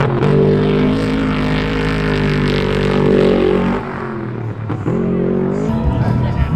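Off-road race truck's engine running hard at a steady pitch, then dipping and getting quieter about two-thirds of the way through, and climbing in pitch again near the end.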